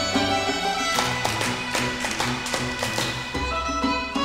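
Live traditional-style music led by fiddle over held accompaniment notes. From about a second in, a quick run of sharp taps keeps time at about four a second until just past three seconds.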